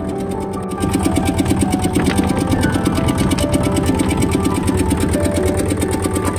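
A boat's engine running steadily with a rapid, even beat, under background music with held tones.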